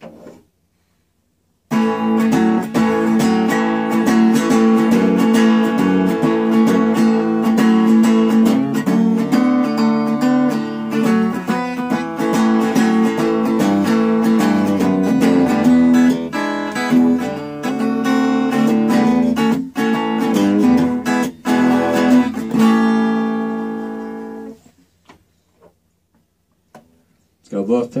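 Electric guitar, a Gibson Les Paul Studio on its bridge P90 pickup, played through a First Act M2A-110 10-watt practice amp with a 7-inch speaker. Starting about two seconds in, it plays a stretch of riffs and chords, then ends on a held chord that rings out and fades a few seconds before the end.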